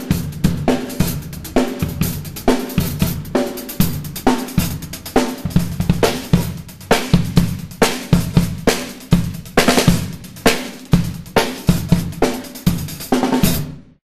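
Drum kit groove played with sticks: sixteenth notes on the hi-hat over bass drum and snare, with some hi-hat strokes accented by a quick open-and-close of the pedal, giving short, loud splashes. This is the staccato way of playing the hi-hat pedal, heel raised. The playing stops abruptly shortly before the end.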